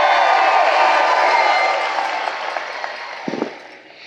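A large audience applauding and cheering, the sound dying away over the last second or so.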